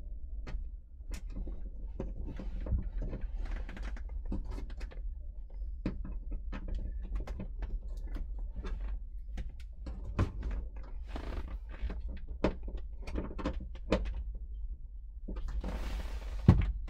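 Phillips screwdriver driving a screw to fasten a helicopter door's overextension safety limiter: scattered small clicks, ticks and scrapes of tool and hardware, over a steady low hum.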